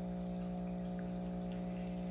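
A steady low hum on one pitch with several overtones, under a faint even hiss.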